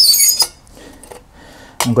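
Metal sections of a Lixada tower wood stove clinking together as the upper piece is set onto the base, a brief metallic clink with a short ring in the first half second.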